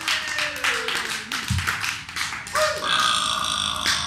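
Scattered clapping with whoops and shouts from a small club audience. A steady held tone rings through the last second and a half and cuts off suddenly.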